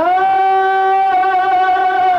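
Pakistani film song: one long, loud, held note, sung over string accompaniment.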